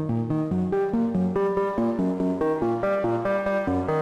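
AE Modular GRAINS synth module running the Scheveningen West Coast firmware, playing a quick sequence of short pitched notes. Its overtones shift from note to note as an LFO modulates the wave folding, its depth being turned up by hand.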